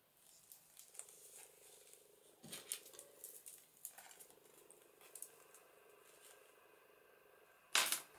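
Faint rustling and light tapping of paper and card being pressed and handled by hand on a cutting mat, with one sharp knock near the end.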